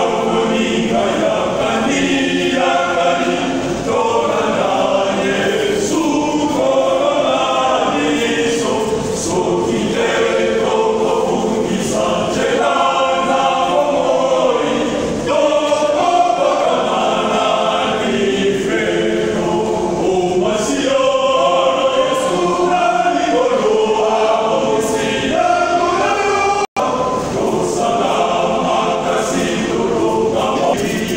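Men's choir singing together without pause, with a split-second gap in the sound about three seconds before the end.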